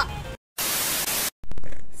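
A television-static sound effect at a cut between clips: a flat burst of white-noise static lasting under a second, starting and stopping abruptly with dead silence on either side. It is followed by a few clicks and a short swell of hiss that fades away.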